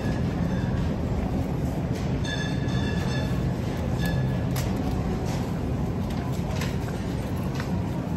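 Metal shopping cart being pushed through a supermarket aisle, its wheels rolling and rattling over the hard floor in a steady rumble with scattered clicks. A brief high-pitched tone sounds from about two to three seconds in.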